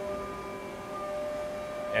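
Steady hum of running shop machinery: several held tones over a low rumbling background, unchanging throughout.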